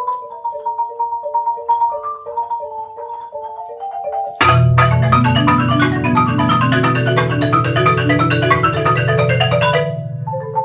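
Two marimbas playing a duet. A quiet melody of single struck notes in the middle register, then about four seconds in both instruments come in loudly together: low notes held under fast runs of high notes, falling back to a quieter line at the very end.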